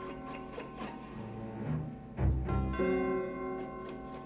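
Orchestral film score: held string chords, with a deep low note swelling in a little past halfway.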